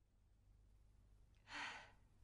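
Near silence, then about one and a half seconds in a single short, breathy sigh from a person.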